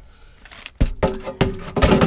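Plastic air fryer basket being slid back into the fryer, with a few sharp knocks and clunks, the loudest near the end as it goes home.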